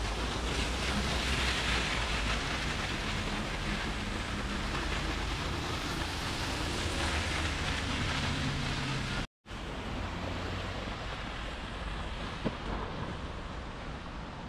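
Steady hiss of rain and car tyres on a wet city road, over a low rumble. The sound cuts out completely for a moment about nine seconds in.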